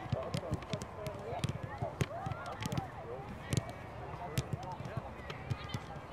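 Soccer balls being kicked and passed by many players at once: a dozen or so sharp, irregular kicks, one of the louder ones about three and a half seconds in. Boys' voices chatter faintly underneath.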